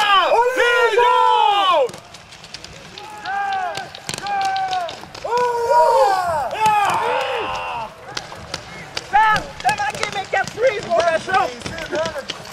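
People shouting in long raised calls, then, in the last few seconds, shorter calls over a quick irregular run of sharp clicks.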